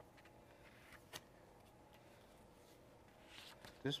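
Near silence with a faint steady hum, two faint ticks about a second in, and soft paper rustling near the end as a heat-transfer carrier sheet is peeled off a pressed T-shirt.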